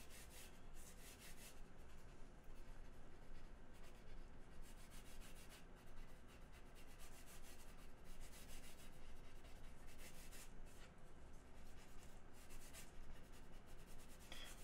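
Blue pencil sketching on an 11 by 17 drawing board: faint, irregular scratching strokes of pencil on paper as the lines are laid down.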